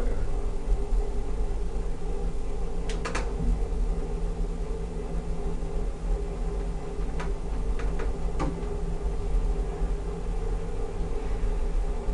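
Hydraulic elevator car in motion: a steady low rumble and hum inside the cabin, with a few brief clicks along the way, as the car travels down to the ground floor.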